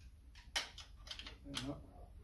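Light clicks and knocks of hands handling the metal staple head of a Rapid 106 electric stapler, the sharpest click about half a second in. A brief murmur of voice comes near the end.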